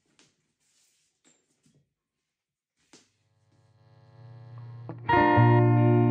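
Epiphone USA Casino hollow-body electric guitar played clean through a tweed Princeton-style amp with a little reverb. After a few seconds of near silence with faint clicks, a note fades in quietly, then a full chord rings out loud about five seconds in and sustains.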